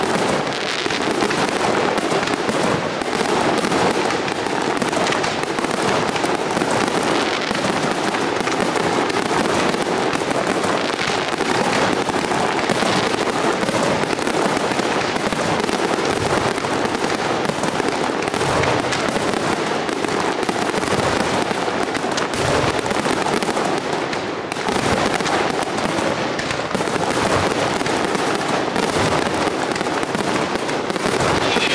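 Aerial firework shells from a professional pyrotechnic display bursting in a dense, unbroken barrage of bangs with no pauses.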